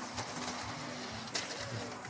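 Faint, steady background noise of a robotics competition arena, with a low hum and two short sharp knocks, one just after the start and one about a second and a half in.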